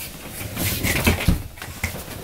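Irregular rustling and soft bumps of movement on a couch and its cushions, a few short knocks among them.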